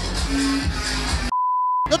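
Nightclub music and crowd noise, cut off a little past halfway by a half-second steady high beep that replaces all other sound: a censor bleep dubbed over a spoken word.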